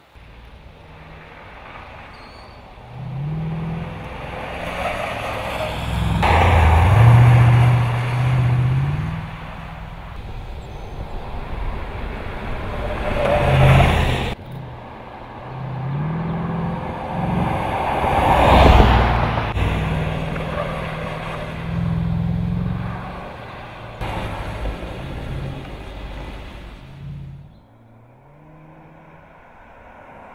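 Jeep Grand Cherokee engine accelerating hard through the gears, its pitch climbing and dropping back at each shift, across several edited shots. It is loudest as the SUV passes close, about seven and eighteen seconds in. Near the end it cuts to a quieter engine.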